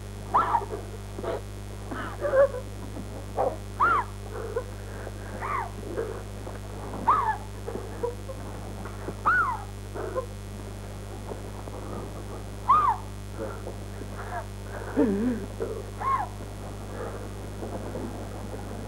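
A person crying in short, high, whimpering sobs that rise and fall, one every second or two, over a steady low hum.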